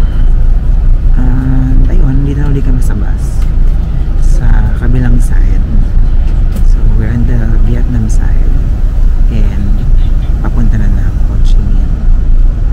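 A man talking over the steady low rumble of a coach bus's engine.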